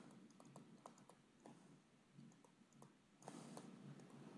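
Near silence with faint, irregular light clicks of a stylus tapping on a tablet screen while handwriting is written, and a soft hiss near the end.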